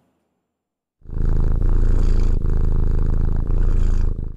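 Domestic cat purring into a microphone held close beside it. The purr is loud, steady and low, and it starts about a second in after a moment of silence.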